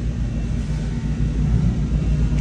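Steady low rumble of background room noise with a faint low hum, unchanging throughout.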